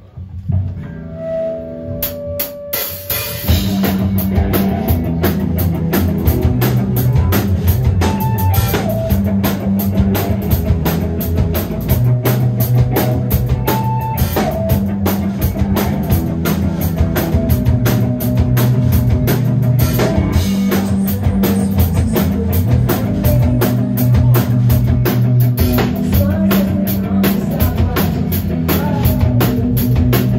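Rock band playing live on electric guitar, bass guitar and drum kit, heard through the room. A short, sparse guitar intro with a few drum hits opens it, and the full band comes in about three and a half seconds in with a steady, driving drum beat.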